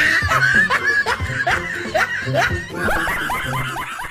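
A man laughing hard in a quick run of short, rising-pitched bursts, about two or three a second, over background music.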